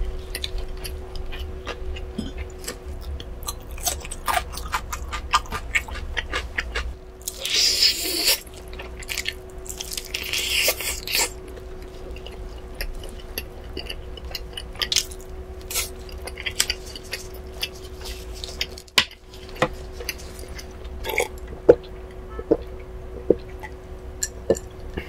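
Close-miked chewing of sauced smoked barbecue chicken: a run of wet mouth clicks and smacks, with two longer rustling bursts about seven and ten seconds in. A faint steady hum lies underneath.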